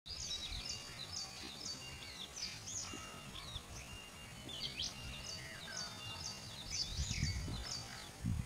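Small birds chirping and singing in quick, overlapping short calls and whistles throughout, with a low rumble rising about seven seconds in.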